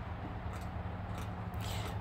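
Steady low rumble of road traffic, with a few faint clicks and a short hiss near the end.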